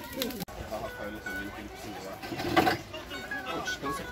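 Several voices talking and calling out over a cavaquinho picking a few notes of a short solo line. The sound changes abruptly about half a second in, and a loud shout or burst of voices comes just past the middle.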